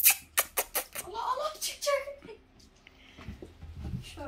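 A run of sharp clicks and knocks in the first second, then a person's voice briefly, low and without clear words.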